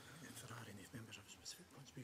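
Faint, quiet speech from a voice away from the microphone; otherwise near silence.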